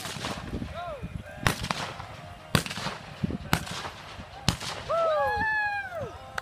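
Five revolver shots from horseback in a cowboy mounted shooting run, roughly one a second, each a sharp crack with a short echo. The guns are single-action revolvers firing black-powder blanks at the course targets.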